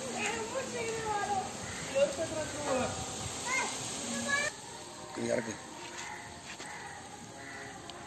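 Sliced onions deep-frying in a large iron kadai of oil: a steady sizzle that drops away about halfway through, with people and children talking over it.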